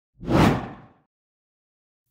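A single whoosh transition sound effect that swells quickly and dies away within about a second.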